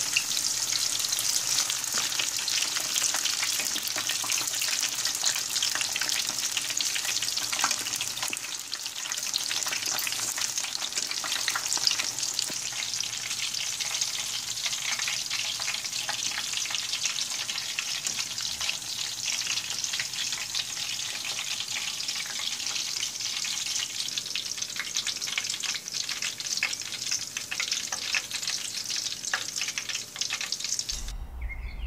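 Battered cauliflower florets deep-frying in hot oil: a steady, dense crackling sizzle with many fine pops, easing a little in the second half.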